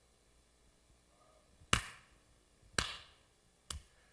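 Three sharp hand claps about a second apart, echoing briefly in a hall; the first is the loudest and the last is faint.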